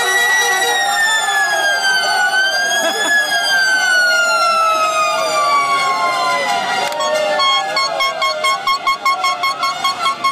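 A long siren-like horn blast slowly falling in pitch over a shouting crowd of celebrating fans. From about seven seconds in, rapid rhythmic horn honking, about three honks a second, takes over.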